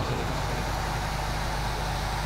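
Steady background hum with an even hiss, no speech; the hum sits low and does not change.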